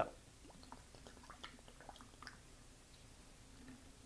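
Faint scattered clinks and small liquid sounds as liquor is poured from a miniature bottle into a glass of ice and mixed in.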